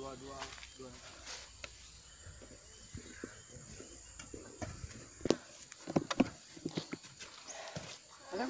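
Hoes chopping into and dragging through a heaped mix of soil, compost and cocopeat, with irregular sharp knocks of the blades from about halfway on. Faint voices at the start.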